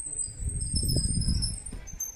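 Wind buffeting the microphone with an irregular low rumble that swells through the middle and then eases. Faint, thin high-pitched chirps sound over it.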